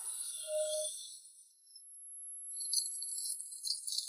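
Soundtrack sound design: a short single tone about half a second in, a near-silent gap, then a faint, high, jingling shimmer that keeps on to the end.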